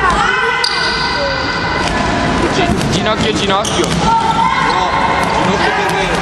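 Children playing on a hardwood sports-hall court: shoes squeak on the floor and young voices echo around the large hall.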